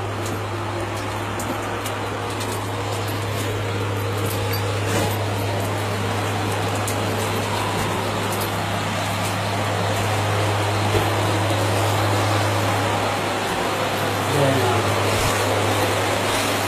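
A steady low hum under a constant wash of noise, with faint voices.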